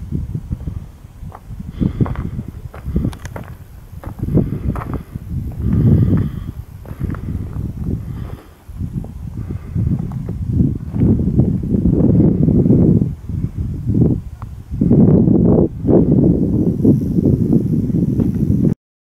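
Wind buffeting the camera's microphone: a loud, low rumble that comes and goes in gusts, heaviest in the last few seconds.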